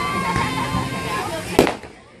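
Aerial firework shell bursting with a single sharp bang about one and a half seconds in, over the chatter of people's voices.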